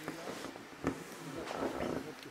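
A man's faint breathing and mouth sounds in a pause between sentences, with a small click just under a second in and a breathier stretch, like an inhale, in the second half.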